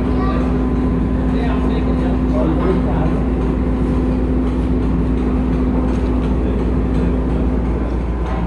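Heinrich Lanz steam engine running with a steady, loud machinery noise and a steady hum that stops shortly before the end.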